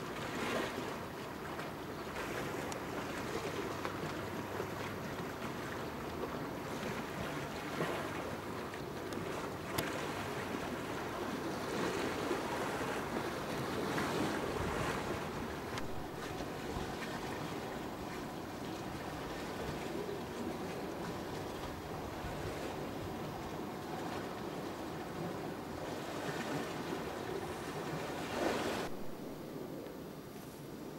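Steady wind buffeting the microphone over the rush of water, heard from a moving boat out on a lake. The sound drops away near the end.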